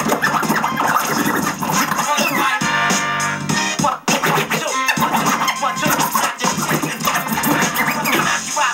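Hip-hop beat with vinyl turntable scratching over it: quick back-and-forth pitch sweeps of a scratched record, densest about two to four seconds in.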